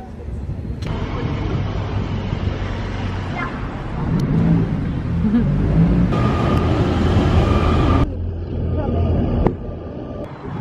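City street traffic: cars driving past with engine and tyre noise. The loudest stretch comes in the middle, and the sound changes abruptly several times.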